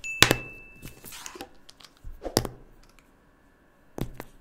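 Plastic felt-tip markers being set down one by one on a paper coloring sheet. There is a sharp knock just after the start, followed by a short ringing tone, then a brief rustle about a second in, and another knock a little over two seconds in.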